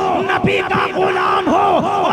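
A man's loud, impassioned voice over a PA system, declaiming in short emphatic phrases that rise and fall in pitch, several times a second.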